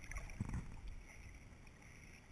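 Muffled underwater noise heard through a camera's waterproof housing: a low rumble of water and bubbles, with a soft thump about half a second in.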